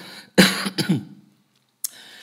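A man coughs once, sharply, about half a second in, clearing his throat; a sharp click follows near the end.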